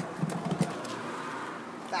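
Plastic wheelie bin being wheeled over paving slabs, its wheels rolling with a few light knocks, along with footsteps. A man's voice starts right at the end.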